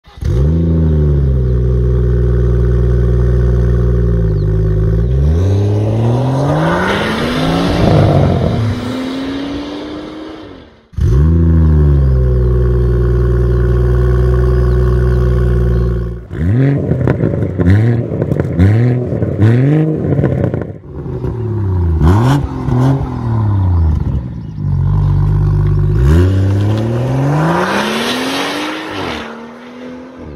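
BMW M240i's 3.0-litre turbocharged straight-six running through a REMUS sport exhaust, revved while stationary. It idles, rises in one long rev and falls back, idles again, then gives a run of quick throttle blips, and ends with another long rev that drops back toward idle.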